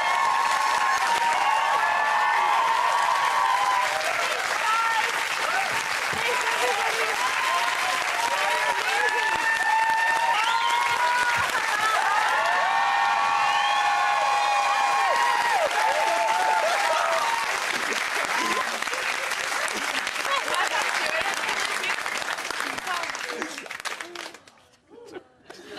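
Studio audience applauding and cheering, with many voices shouting and whooping over steady clapping; the applause fades away near the end.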